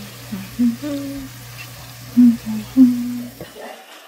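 A woman humming a tune in short held notes, over a steady low hum that stops near the end.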